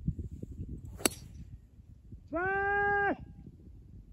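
A golf club strikes a ball about a second in: a single sharp crack. A second or so later comes a louder, flat, held pitched tone with overtones, lasting under a second, from an unseen source.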